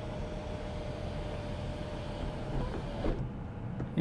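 Power sunroof of a 2018 Chevrolet Impala sliding open: its electric motor runs with a steady whine and stops about three seconds in, heard inside the car's cabin.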